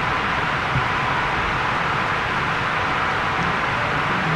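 Steady, fairly loud background hiss of the chamber's microphone feed, with no speech.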